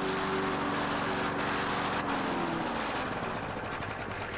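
Petrol lawn mower engine running steadily, then dropping in pitch about two seconds in as the engine slows.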